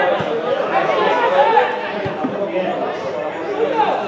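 Several voices shouting and calling over one another without pause, as players and onlookers do during football play.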